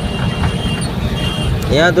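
Steady low rumble of an empty truck's engine and tyres on the road, heard from inside the cab while driving along a highway.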